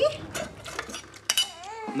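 Metal cutlery clinking against dishes at a table: a few sharp clinks, with a quick pair about a second and a half in.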